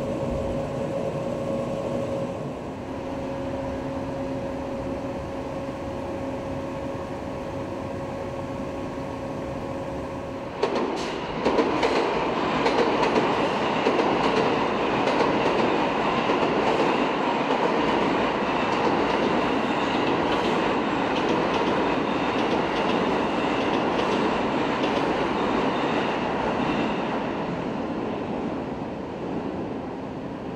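Railway sounds at a station platform: a steady electrical hum from a standing train. About ten seconds in, a louder rumbling rush of a train moving on the rails sets in and carries on, with a faint high squeal.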